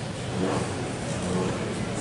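Indistinct chatter of many people in a large hall: overlapping voices with no single clear talker, over a steady low room rumble.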